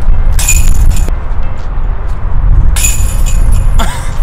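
Wind buffeting the microphone in a loud, steady low rumble, with two short bursts of metal chains clinking about half a second in and near three seconds, as thrown discs strike a disc golf basket.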